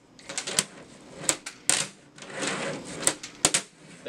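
Handboard clacking against a folding tabletop as late flips are popped and landed: about five sharp clacks, with the urethane wheels rolling on the table between them.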